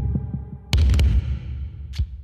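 A soundtrack of deep, throbbing bass thuds with sharp clicks. The loudest thud, with two or three clicks, comes about three-quarters of a second in, and a lone click sounds near the end.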